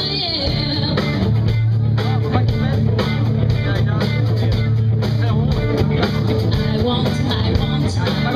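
Rock band playing live: electric guitars, bass guitar and drums, with a woman singing.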